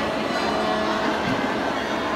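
Many people chattering at once in a large reverberant hall, a steady crowd hubbub with children's voices.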